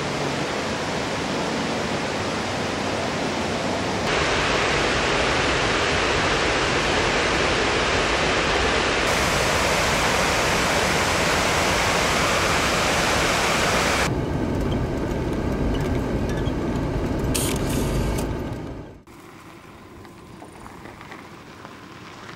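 Water pouring over a wide low dam spillway: a loud, steady rush that changes in level several times, then drops off sharply near the end to a much quieter hiss.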